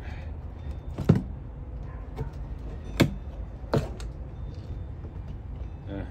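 A shot-through tin can being handled: a few sharp knocks and clinks of the can against the table, the loudest about one and three seconds in, over a low steady rumble.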